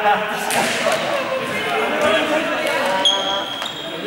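Students shouting and chattering in a sports hall, with a ball bouncing on the gym floor and a brief high squeal about three seconds in.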